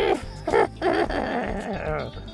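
A man laughing.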